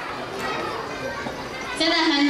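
Hubbub of many young children talking and calling out at once, echoing in a large hall. A single clear voice begins speaking loudly near the end.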